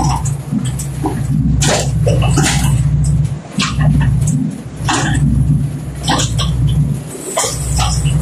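A machine's engine running with a steady low drone, overlaid by irregular loud sharp bursts about once a second.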